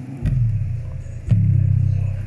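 Bass-heavy music played loud through a loudspeaker's woofer, with deep bass notes striking about once a second.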